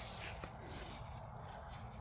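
Faint footsteps on grass over quiet, steady outdoor background noise, with a faint tick or two.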